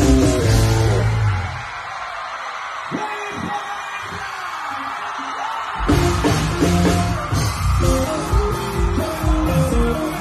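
Live band music with a singer: the drums and bass drop out for a few seconds, leaving a lighter passage, then the full band comes back in suddenly about six seconds in.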